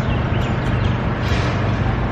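Steady outdoor city background noise: street traffic with a constant low hum.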